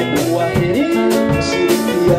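Live gospel band music: electric guitar and drum kit playing a steady beat, with choir singing.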